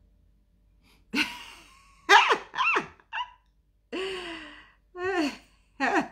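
A woman's voice in several short bursts: breathy exclamations and sighs with pitch gliding up and down, after about a second of quiet.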